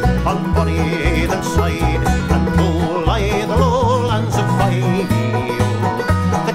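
A man singing a Scottish folk ballad to his own banjo accompaniment, the voice wavering in a slow vibrato over steadily plucked banjo notes. A deep, pulsing bass part runs beneath.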